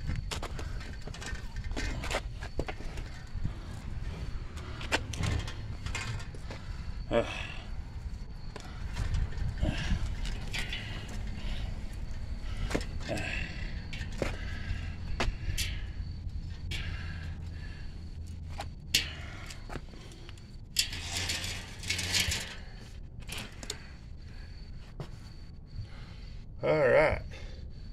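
Scattered clicks, knocks and rattles from an adult tricycle's metal frame and wire baskets as it is lifted and turned by hand.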